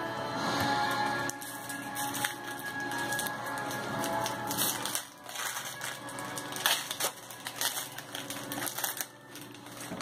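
Background music playing under the light clicks and rustles of trading cards being handled and foil booster-pack wrappers crinkling.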